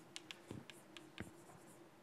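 Chalk writing on a blackboard: a faint, quick run of taps and short scratches as the strokes are made.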